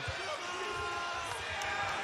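A single voice holding one long shout over the arena crowd's noise.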